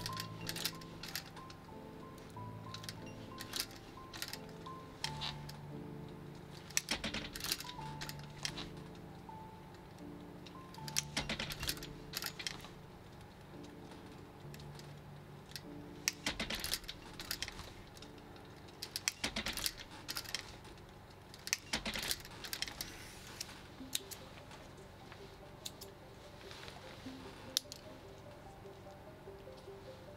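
Soft background music with held, slowly changing notes. Over it, an industrial sewing machine stitches leather in short, irregular runs of sharp clicks, in several clusters spread through.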